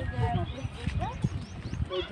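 Voices of people talking in the background, several overlapping, over an uneven low rumble.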